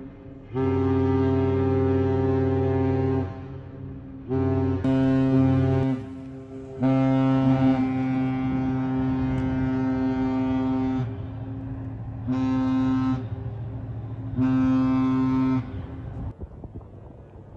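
Great Lakes freighters' horns sounding salutes: one long blast, a shorter one, then another long blast followed by two short blasts, the long-and-two-short master salute.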